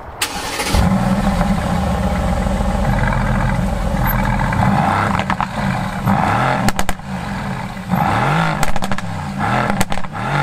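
Mercedes-AMG GT S Edition 1's 4.0-litre twin-turbo V8 starting up with a flare of revs through the stock exhaust, then settling and being blipped several times. The revs rise and fall each time, with sharp pops as they drop.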